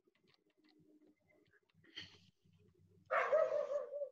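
Faint clicks, then near the end a short wavering cry of about a second, pitched well above the narrator's voice, like an animal's call.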